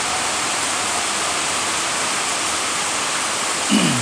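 Steady, even hiss of background noise, unchanging throughout, with a short low voice sound just before the end.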